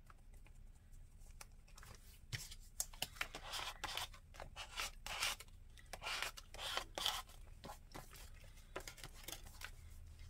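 Faint paper rustling and scraping in a run of short strokes, with small clicks, as a glued paper cutout is pressed and rubbed down onto a journal page.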